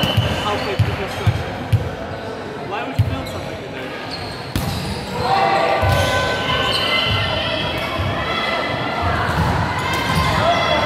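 Volleyballs bouncing on a wooden sports-hall floor, a run of dull thumps about half a second apart in the first couple of seconds and one more near three seconds, echoing in the large hall. From about five seconds in, voices calling out fill the hall.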